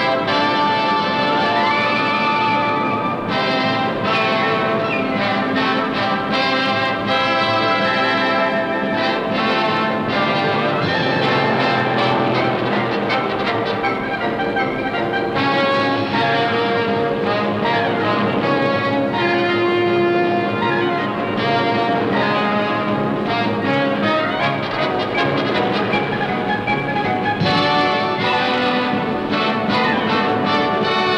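Orchestral film score with brass playing at a steady level.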